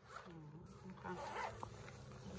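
Zipper of a child's soft lunch bag being pulled open, a quiet rasp. A brief whine-like voice sounds near the start.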